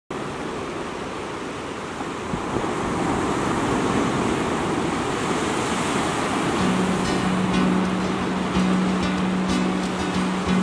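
Ocean surf, a steady rush of breaking waves. About two-thirds of the way through, a low held musical note comes in over it.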